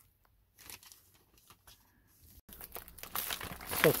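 Plastic bag holding a stereo wiring harness crinkling as it is handled, mostly in the second half and building toward the end.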